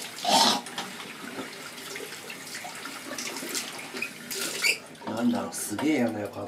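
Water running from a tap into a sink, a steady rush, with a short burst of voice about half a second in and more voice sounds near the end.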